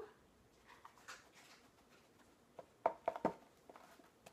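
Dry pancake mix being scooped and poured from its cardboard box with a measuring cup: faint rustling and scraping, then a short cluster of clicks and scrapes about three seconds in as the cup knocks against the box.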